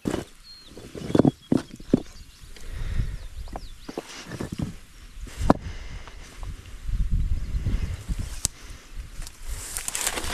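Handling and movement noise outdoors: scattered sharp knocks and rustles over a low, uneven rumble like wind on the microphone, with a few faint high chirps of a small bird.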